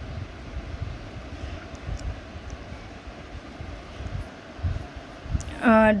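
Top-loading washing machine running on its dry (spin) cycle, giving a low, uneven rumble.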